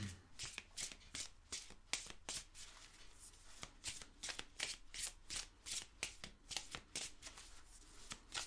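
A deck of oracle cards being shuffled by hand: quick, light strokes of the cards sliding over one another, several a second in an uneven rhythm.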